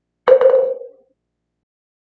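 A single short struck tone with a clear pitch, starting about a quarter second in and dying away within a second. It is a chime-like sound cue marking the start of a new chapter in the recitation.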